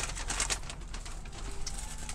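White paper fast-food bag rustling and crinkling as a hand rummages in it for French fries, loudest in the first half-second.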